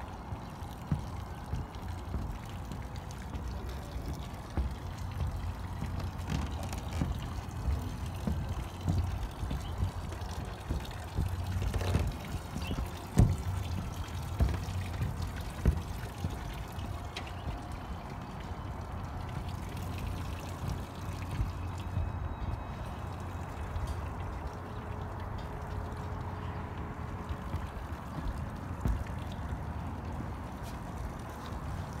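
Footsteps on a submarine's deck over a low steady rumble, with scattered knocks and one louder knock about 13 seconds in.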